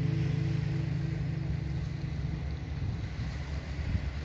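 Last strummed acoustic guitar chord ringing on and fading away over the first two or three seconds, over a rough low rumble of wind on the microphone.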